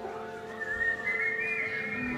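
A high, wavering whistled melody line coming in about half a second in, over sustained chords on a Nord Stage 2 keyboard.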